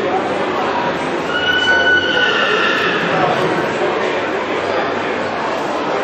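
A horse whinnying once, a high call of about a second and a half, over the steady chatter of a crowd.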